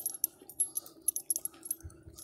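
Light metallic jingling: a string of short, irregular clinks of small metal pieces jostling together, with one dull low thump near the end.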